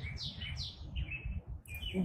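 A small bird chirping rapidly in short falling chirps, about four a second, thinning out after about a second, over a faint steady low rumble.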